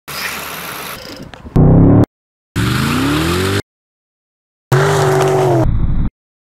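BMW car engine revving in several short clips cut off sharply by silences. In one rev the pitch climbs, and in a later one it rises and falls.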